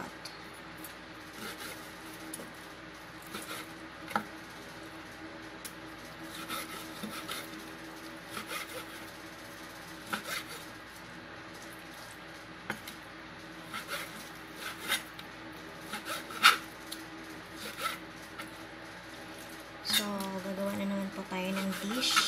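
Kitchen knife cutting raw chicken thigh on a plastic cutting board: irregular taps of the blade on the board, one louder knock about three-quarters of the way through, over a faint steady hum.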